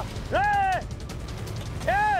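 Two short shouted calls, one near the start and one at the end, with a fast run of faint, even ticks between them.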